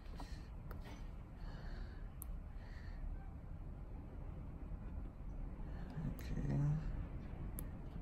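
Faint, steady low rumble with a few light clicks, and a man's short low hum about six seconds in.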